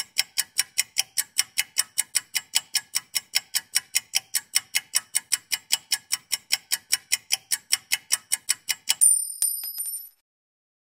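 Countdown timer sound effect: rapid clock-like ticking, about five ticks a second, ending about nine seconds in with a high ringing ding as time runs out.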